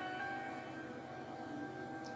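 Soft instrumental background music with several notes held together as a sustained chord.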